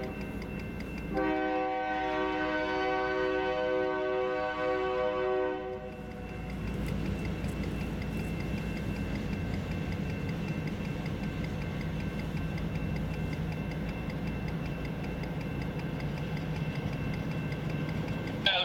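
A train horn sounds one long blast of about four and a half seconds, a chord of several steady tones, over the regular dinging of a grade-crossing bell. Then the Conrail office car special's passenger cars and diesel locomotive rumble steadily through the crossing while the bell keeps ringing.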